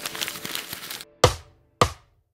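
A short musical logo sting ends about a second in, followed by two sharp count-in clicks about 0.6 s apart, counting in at the song's tempo.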